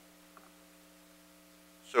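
Faint, steady electrical hum made of a few constant tones, with no other sound over it; a man begins to speak right at the end.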